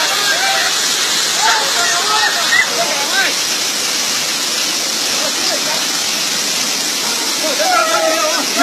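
River rapids: whitewater rushing over rocks, a steady, unbroken rush of water.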